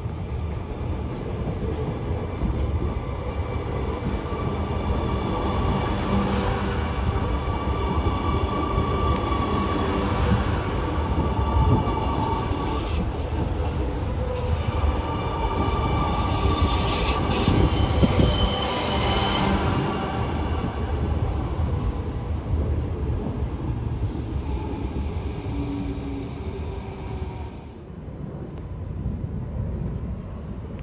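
Alstom Metropolis metro train departing and running past: a steady rumble of wheels on the rails with several high steady tones over it. It is loudest about twelve and eighteen seconds in, then fades away near the end.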